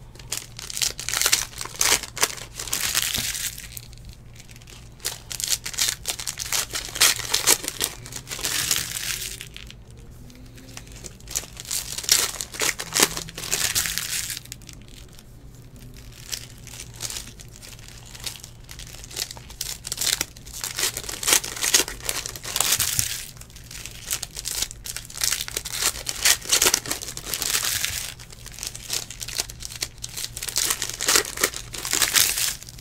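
Plastic wrappers of trading card packs crinkling and tearing as the packs are ripped open and the cards pulled out, in bursts of a few seconds that come again and again.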